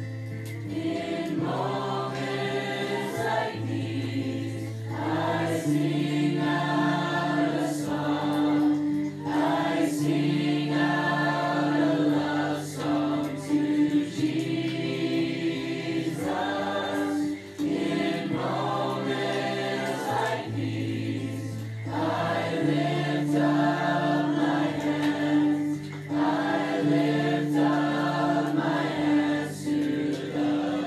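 Choral gospel music: a choir singing over sustained bass notes that change every couple of seconds.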